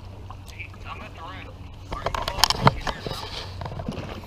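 A sheepshead being handled and unhooked: a quick cluster of sharp clicks and scrapes about two seconds in, over a steady low rumble of wind on the microphone.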